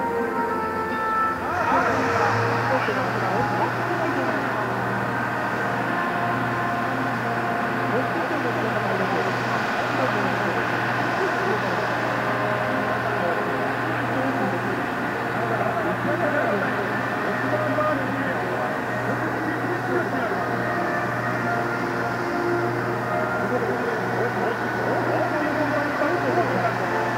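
Music ends about a second and a half in, giving way to a steady low hum of a running machine with a slight pulse, under indistinct murmur of people's voices.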